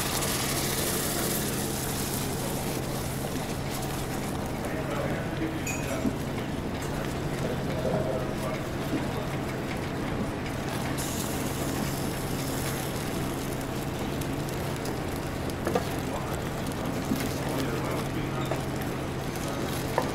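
Milk poured into a hot butter-and-flour roux in a steel pot: the sizzle dies away over the first few seconds. Then a wooden spoon stirs the thickening white sauce, over a steady low machinery hum.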